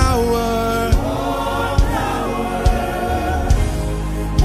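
Gospel worship music: voices singing long held, sliding notes over a steady low beat that falls a little faster than once a second.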